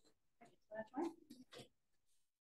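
A few faint, short human vocal sounds in quick succession around the middle, like murmurs from people practising in the room.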